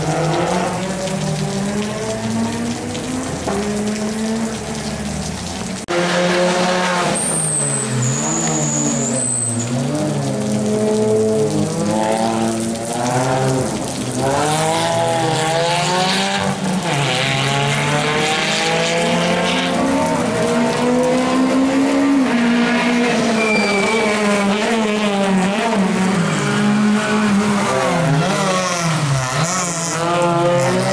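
Rally cars, a Mini and a Renault Clio among them, driving a twisty stage: the engines rev up and fall back again and again through gear changes and corners. A brief high-pitched squeal comes about seven seconds in.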